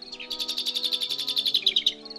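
A songbird singing a rapid trill, about a dozen short repeated notes a second, lasting about a second and a half, over soft background music with sustained tones.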